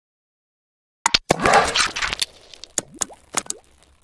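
Cartoon-style pop sound effects for an animated logo intro. About a second in there is a quick run of sharp pops and a short rushing burst, then three or four more pops with quick upward pitch sweeps, fading out near the end.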